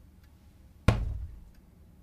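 A single dull thump about a second in, with a short low tail that dies away quickly.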